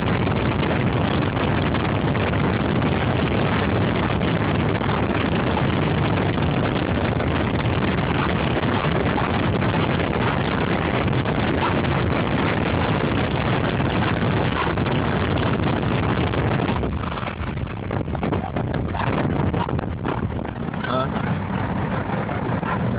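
Steady rush of wind and road noise inside a moving car with the window open. It eases and turns gustier about three-quarters of the way through.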